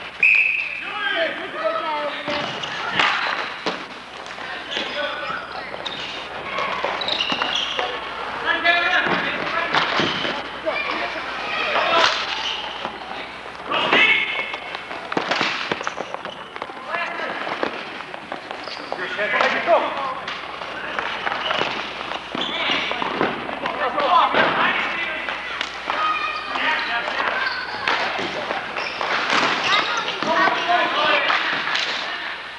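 Ball hockey play: sharp knocks of sticks on the ball, floor and boards every second or two, with players' voices calling out across the rink.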